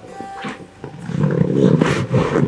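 A woman's long, rough groan of discomfort, starting about a second in, from someone hungover and nursing a headache, over soft background music.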